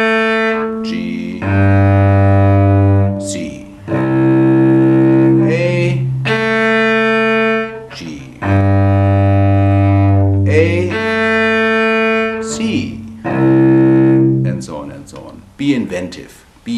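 Cello played with long, slow bow strokes on its open strings, about seven sustained notes of one to two seconds each, moving between strings in a pattern with short breaks between strokes; it starts on the open A string. A man's voice comes in briefly near the end.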